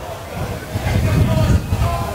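Wind rumbling unevenly on an outdoor microphone at a football ground, with faint distant voices from the pitch or stands.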